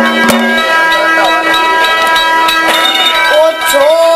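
Live stage music: a steady held chord on a reed instrument, with a single sharp knock just after the start and a voice coming in briefly near the end.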